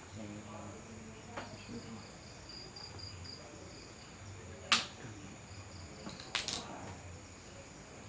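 Crickets and night insects chirring steadily. About halfway in comes a single sharp crack from a shot of a Predator Tactical PCP air rifle, the loudest sound, followed about a second and a half later by a short cluster of softer clicks.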